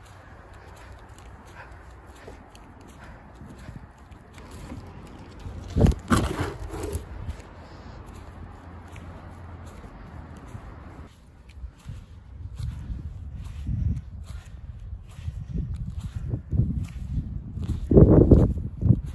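Footsteps crunching in fresh snow, a person walking in slide sandals; the steps come as regular thuds about once a second in the second half, with one louder sudden sound about six seconds in.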